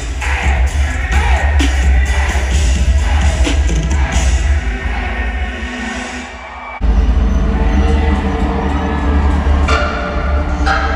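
Loud live concert music in an arena, with heavy deep bass and crowd noise underneath. About six seconds in the music thins and drops, then a new bass-heavy section cuts in suddenly just before the seventh second.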